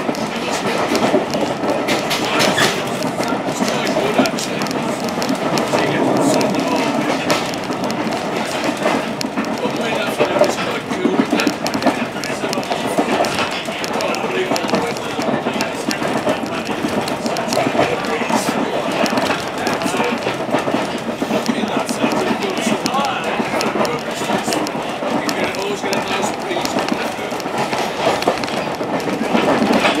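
Running noise of a train carriage in motion: a steady rumble with wheels clicking over the rail joints.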